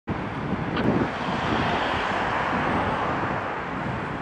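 Steady road traffic noise from slow-moving cars in town traffic, an even rushing sound with no clear engine note.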